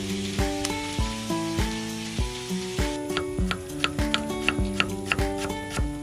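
Chicken pieces sizzling as they fry in a wok, under background music of plucked notes with a steady low beat. About halfway through, the sizzling gives way to a quick series of knife chops on a wooden chopping board, about four or five a second.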